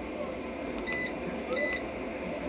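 Keypad of a 6200 W, 48 V hybrid off-grid solar inverter beeping twice, two short high beeps less than a second apart, as its buttons are pressed to step through the display screens.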